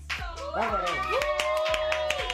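A person clapping their hands over background music with a beat, while a high voice rises and is held in one long exclamation or sung note.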